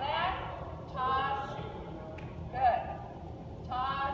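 Short bursts of a person's voice, with one faint tap about halfway through.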